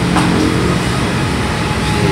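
A motor vehicle's engine running steadily, a low hum with no change in pitch.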